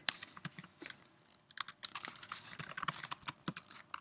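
Typing on a computer keyboard: a run of quick key clicks, with a short pause about a second in before the typing picks up again.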